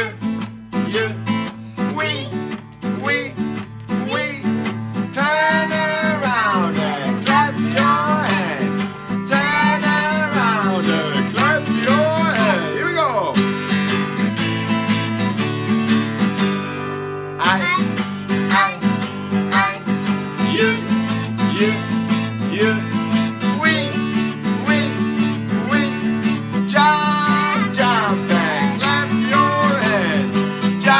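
A children's song with strummed acoustic guitar and singing, a group of young children singing along.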